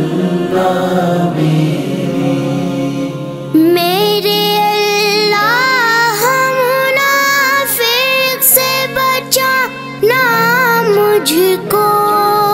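A chorus holds a low chanted drone; about three and a half seconds in, a boy's high solo voice comes in over it, singing a devotional Urdu manqabat melody with ornamented, sliding runs.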